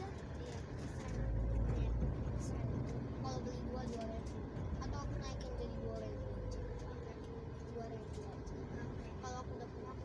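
Road and engine rumble heard inside a car's cabin while it moves slowly in heavy traffic. The low rumble swells about a second in and then eases off gradually.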